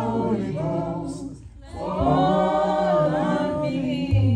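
Congregation singing a gospel song together, several voices in harmony over a held low bass note; the singing dips briefly about a second and a half in, then comes back fuller.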